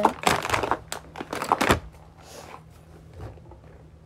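Things being handled and rummaged through: a quick run of rustling and knocking noises in the first two seconds, then quieter handling.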